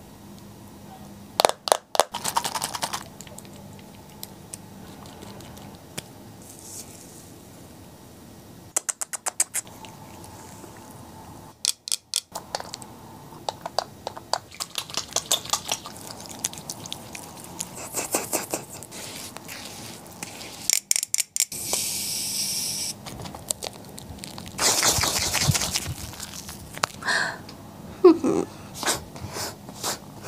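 Close-up skincare handling sounds: short runs of quick clicks and taps from bottles and packaging, hands rubbing and washing the face, and a brief hiss about 22 seconds in.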